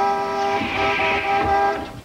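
A vehicle horn held in one long, steady blast that stops shortly before the end: a driver honking at a cyclist in the road.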